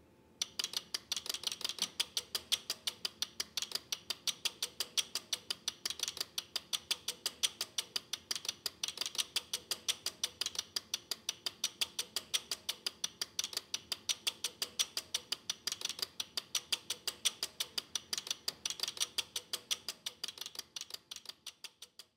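Relays of a home-built relay computer and its relay-based cassette tape program loader clicking in a rapid, steady rhythm of several clicks a second as a program is loaded, with louder stretches every few seconds. The clicking fades out near the end.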